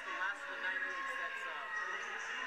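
Indistinct chatter of several overlapping voices, with no one voice standing out.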